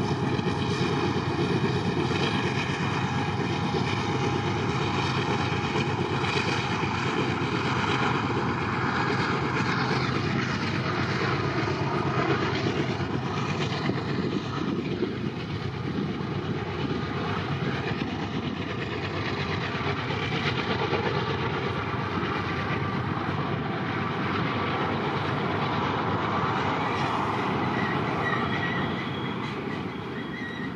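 BNSF freight train running on the rails, a steady, loud noise with no break. A thin, high wheel squeal comes in near the end.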